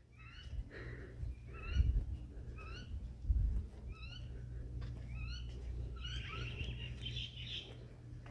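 A bird giving short calls about once a second, each a quick down-and-up note. Two low thumps about two and three and a half seconds in are the loudest sounds, over a faint low hum.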